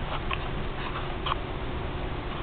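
Handling noise from a handheld camera being moved: a steady low rumble with a faint steady hum and a few soft clicks and rustles.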